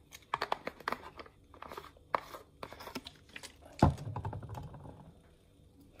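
Paintbrush and small plastic paint cup being handled: a run of light clicks and crinkles, then a single sharper knock about four seconds in.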